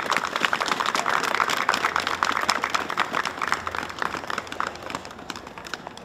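A crowd applauding, dying away over the last couple of seconds.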